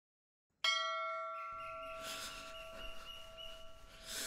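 A single bell-like chime struck about half a second in, after silence, ringing on with several steady tones and slowly fading away near the end. A faint background hiss comes in behind it.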